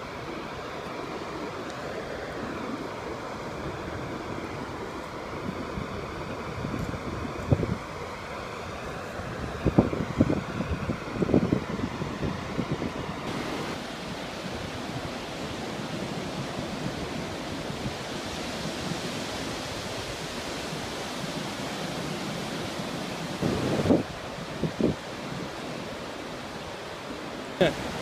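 Ocean surf washing onto a sandy beach: a steady rushing noise, with a few short low rumbles of wind on the microphone.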